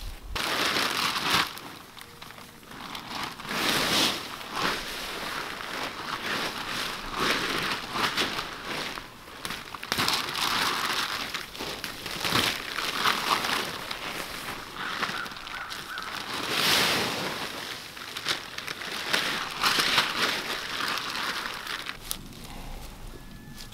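Dry fallen leaves crunching underfoot and tarp fabric crinkling as it is handled and folded, in irregular bursts every second or two.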